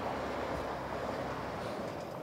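Steady outdoor background noise, a featureless hiss-like hum that fades slightly toward the end.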